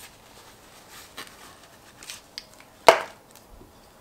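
Handling noise of a small electric vacuum pump being taken out of a fabric drawstring pouch: soft rustling with a few light clicks, and one sharp knock about three seconds in.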